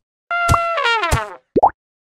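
Cartoon sound effects for an animated logo: a held, horn-like toot that slides down in pitch, like a cartoon elephant trumpeting, then a short rising pop just before the end.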